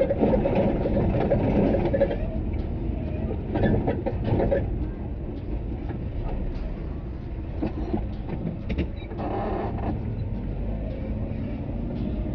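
Steady low rumble of a car's engine and tyres heard from inside the cabin while driving slowly through city traffic.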